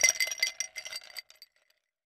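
Glassware clinking and ringing in a quick flurry of strikes that dies away about a second and a half in.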